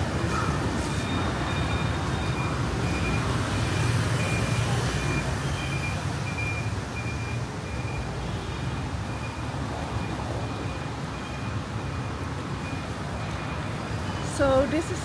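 Street traffic noise: a steady rumble of passing vehicles, with a high electronic beep repeating at an even pace.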